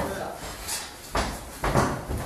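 Dull thuds of contact between Muay Thai sparring partners in a clinch, two of them about half a second apart.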